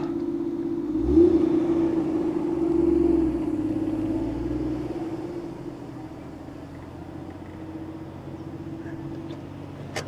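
Toyota Soarer 2.5GT-T's 1JZ-GTE turbocharged inline-six with an aftermarket exhaust, revs rising about a second in as the car pulls away on a TRD sports clutch whose take-up is hard to judge. The engine note eases back to a quieter steady running sound from about five seconds in.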